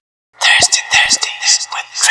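A voice whispering close into a microphone in short, breathy phrases, starting a moment in after a brief silence.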